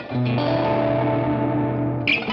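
Electric guitar, a Stratocaster-style solid-body, played through a Providence Flame Drive overdrive pedal: a driven chord is struck just after the start and left to ring, its upper notes fading, with new notes picked near the end.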